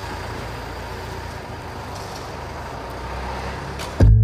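Steady background noise, an even hiss with a low rumble and a faint hum, starting abruptly and cutting off suddenly at the end.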